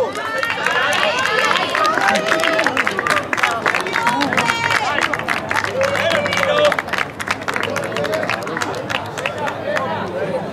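Small rugby crowd of sideline spectators shouting and calling out over one another, with many short sharp claps mixed in. It is loudest through the first two-thirds and eases off toward the end.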